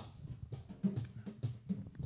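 Faint, irregular low drum thumps in the background.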